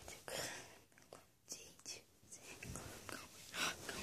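Faint whispering: several short breathy bursts without a clear voice, the loudest near the end.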